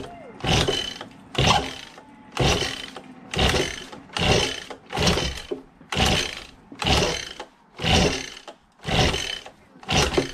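Recoil starter rope on an Echo PB-2100 two-stroke leaf blower being pulled again and again, about once a second, the engine turning over on each pull without starting. The owner suspects the flywheel key is sheared and the ignition timing is off.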